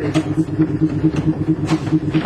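A 1928-type Milan tram of the 1500 series running, heard from on board: a low hum that pulses about six times a second, with a few sharp clicks and clatters.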